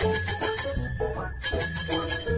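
Small domed call bells (desk service bells) struck twice, one ring at the start and another about a second and a half in, each ringing on with a bright high tone.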